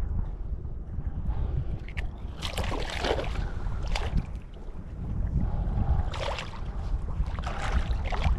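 Shallow seawater splashing in several short bursts as a caught fish is handled at the surface and put on a rope stringer, over a steady low rumble of wind on the microphone.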